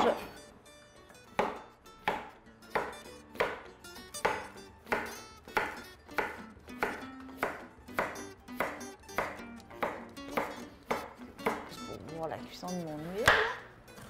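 Kitchen knife chopping through onion and zucchini onto wooden cutting boards, a steady stroke about every two-thirds of a second, with background music underneath.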